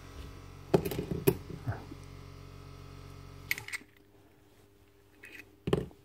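Metal parts of an impact wrench's hammer mechanism being handled: a few sharp clicks and clinks, then a dull knock near the end. A low steady hum underneath cuts out a little past halfway.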